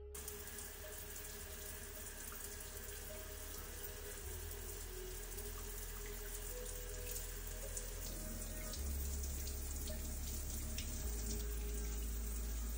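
Shower water running steadily, spray hitting the tiles, growing gradually louder.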